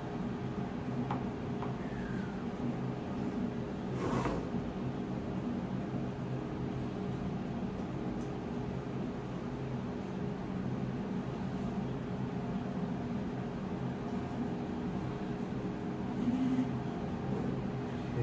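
Steady low hum of a room with running equipment, with faint handling of small plastic parts being glued and pressed together, and a brief click or scrape about four seconds in.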